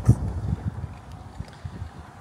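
Wind buffeting the microphone in low, uneven rumbles, with one sharp thump just after the start.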